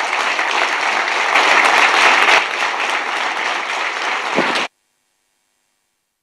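Audience applauding at the close of a speech, steady and sustained, then cut off abruptly near the end.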